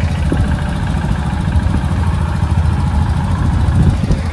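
A vehicle engine idling steadily, left running to warm up in the cold before setting off.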